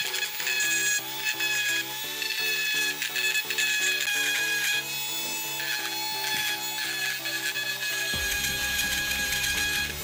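Background music over the steady high whine of a small handheld rotary tool grinding the rusty steel hub of a wheel.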